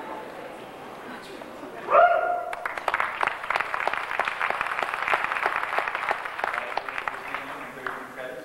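Audience applause in a hall, starting about two seconds in with one loud shout from the crowd, then steady clapping.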